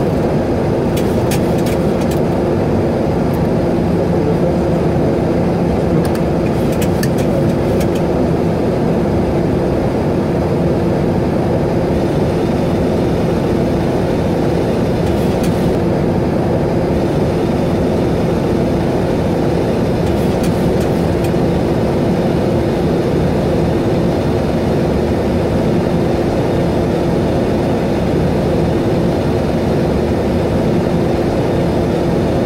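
A loud, steady engine drone with a constant low hum that holds the same pitch throughout, with a few faint clicks on top.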